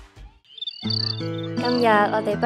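Cricket-like chirping in short, evenly repeated high pulses after a brief near-silent gap. About a second in, sustained low music notes start under it, and a voice begins near the end.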